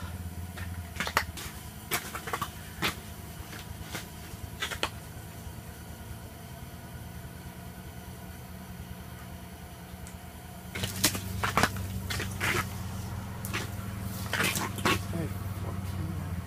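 A steady low hum under scattered clicks, knocks and rustles of handling as a large crappie is held up and turned. The hum grows louder about eleven seconds in, with a run of knocks after it.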